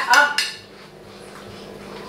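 A short spoken word, then forks clinking and scraping on plates as children eat.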